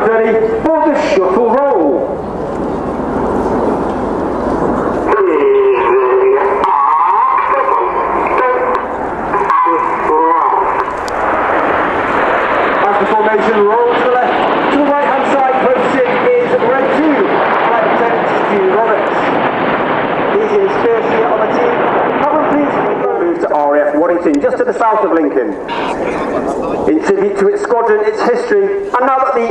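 BAE Hawk T1 jets, each with a single Adour turbofan, flying past in formation: a broad rushing jet noise, strongest through the middle. Indistinct voices run over it.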